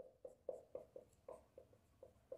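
Marker pen writing on a whiteboard: a quick series of faint, short strokes, several a second, as letters are drawn.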